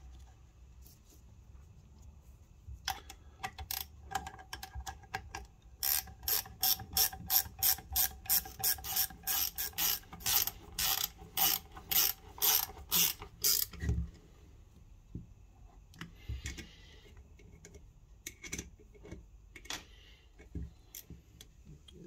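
Ratchet spanner clicking as flange bolts are tightened on a turbocharger. A few scattered clicks build into a steady run of about three clicks a second, which stops with a single low knock about two-thirds of the way through.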